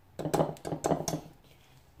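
A wire balloon whisk stirring dry flour in a terracotta bowl, its wires scraping and knocking against the clay in a run of quick strokes about a second long.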